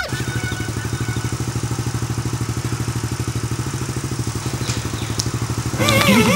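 Small step-through motorcycle's engine idling with an even, rapid pulse. Music comes back in near the end.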